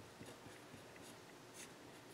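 Faint scratching of a pen writing on paper, in several short strokes.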